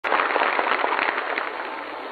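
Dense crackling noise on an old, narrow-band archival recording, loudest at the start and fading over about two seconds.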